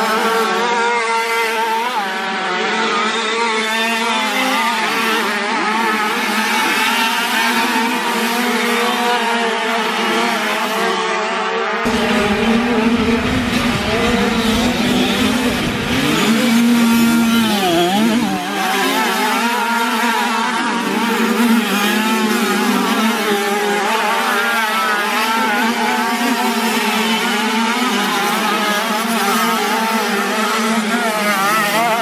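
Several classic 50cc two-stroke motocross bikes racing, their high-pitched engines buzzing and revving up and down over one another. About halfway through, the sound gets louder for several seconds.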